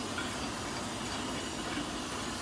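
Steady hiss of outdoor background noise, even and unbroken, with no distinct strike or tool sound.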